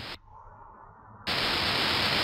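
Quiet for about a second, then a steady static hiss from the recording comes in suddenly and holds at an even level.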